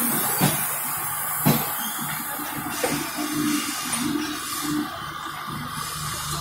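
LHB passenger coaches rolling slowly past at arrival speed: a steady rumble with a low hum, broken by a few sharp clunks of wheels over rail joints.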